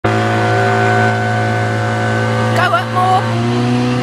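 Outboard motor on a small boat running steadily at speed under load while towing an inflatable ringo, a constant hum at an unchanging pitch. A person's voice calls out briefly over it a little after halfway.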